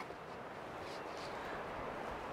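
Wind blowing outdoors, a faint, even rush that slowly grows a little louder.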